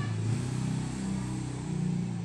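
A low, steady engine hum, a motor vehicle running.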